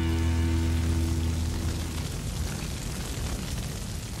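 The last held chord of the band's country song dies away over the first two seconds. A crackling fire sound effect takes over and fades slowly.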